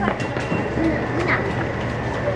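Faint, indistinct voices of people in the background over a steady low hum and a thin, steady high whine.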